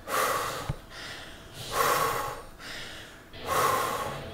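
A man breathing hard through his open mouth, winded after an intense round of burpees and deadlifts: three heavy breaths, about one every two seconds.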